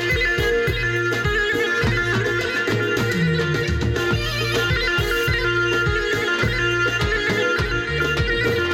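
Traditional folk dance music with a held drone over a steady beat of about three strokes a second.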